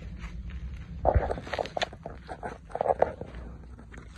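Tomato plants' leaves and stems rustling and brushing as they are handled and tied to stakes with twine, in two louder patches about a second in and near three seconds, over a steady low rumble on the microphone.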